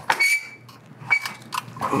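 Hand riv nut tool setting a 1/4-20 riv nut into a steel bracket: a series of sharp metallic clicks and clinks as the tool is worked, with a scraping stretch near the end.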